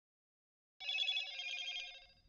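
A brief electronic ringing tone of several steady, fluttering pitches, like a telephone ring, starting suddenly just under a second in and fading after about a second.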